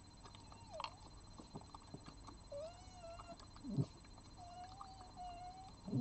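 Red fox giving several drawn-out whining calls, one short, then three longer and fairly level. Two dull thumps, about four seconds in and at the end, are the loudest sounds.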